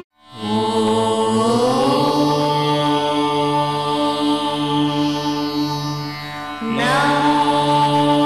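Devotional chant music: long held sung notes over a steady drone. It follows a brief silent cut at the start, and a new phrase enters with a rising note about seven seconds in.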